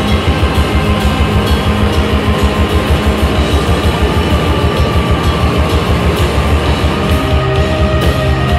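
Live rock band playing loud instrumental music on electric guitar, electric bass and drum kit, with held guitar notes over a steady, rapid drum beat.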